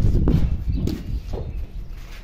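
Footsteps in sandals scuffing and slapping on a concrete rooftop, with a couple of sharp taps about a second in, over a low rumbling noise that is loudest at the start.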